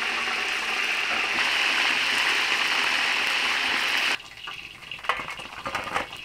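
Chicken pieces sizzling as they deep-fry in a large pot of oil, a loud steady hiss. It cuts off suddenly about four seconds in, leaving a few light metal clicks.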